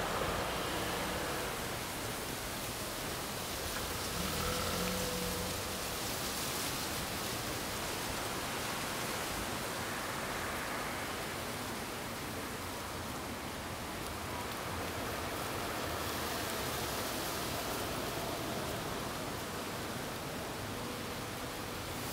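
Steady, even hiss of outdoor background noise, with no distinct bird calls.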